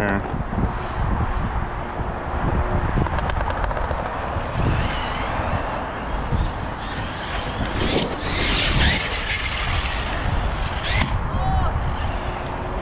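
Arrma Kraton 6S RC truck's electric motor whining and revving under throttle over heavy wind rumble on the microphone, with a brighter, louder surge about eight to nine seconds in.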